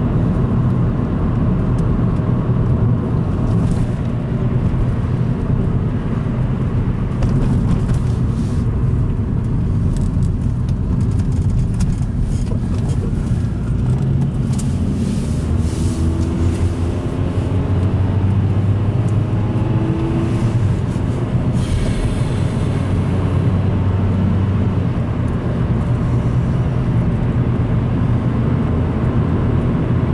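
Road noise inside a moving car's cabin: a steady engine and tyre drone, with the engine note rising a little midway as it gathers speed.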